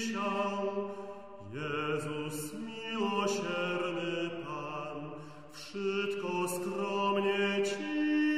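Small vocal ensemble singing a late-15th-century Polish Passion hymn in chant style, several voices in sustained lines. Phrases break briefly about a second and a half and five and a half seconds in.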